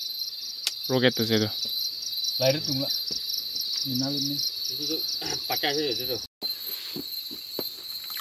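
Night insect chorus: a steady, high, shrill trill with fast even pulsing, under short bursts of low voices. The sound drops out briefly about six seconds in.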